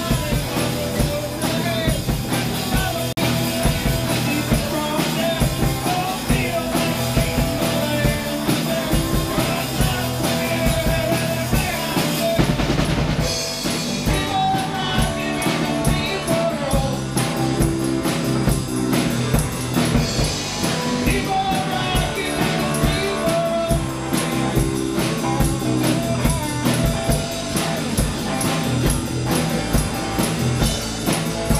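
Live rock song from a small band: acoustic guitar strummed and electric bass, with a man and a woman singing and a tambourine.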